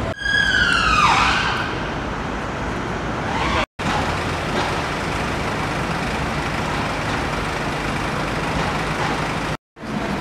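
An emergency vehicle siren sounding one falling wail, about a second long, at the start, over steady street traffic noise with a low hum. The sound drops out completely twice for a moment.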